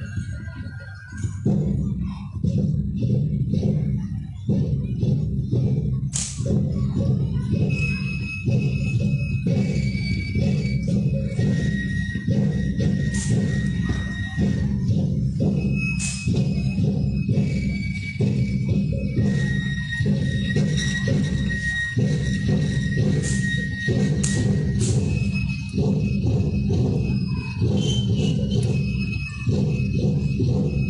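Drum music for an Aztec-style feather dance: a deep drum beaten fast and steadily, filling in about a second and a half in, with short high ringing tones over it.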